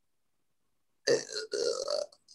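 Silence for about a second, then a man's short, rough, throaty vocal sound in two parts.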